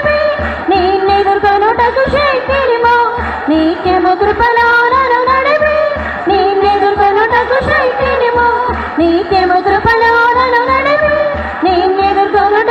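A song: a voice singing a melody over instrumental backing with a steady beat.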